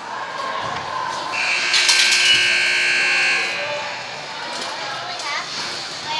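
An arena buzzer sounds one steady tone for a bit over two seconds, starting over a second in, in a large echoing hall with spectators' voices around it.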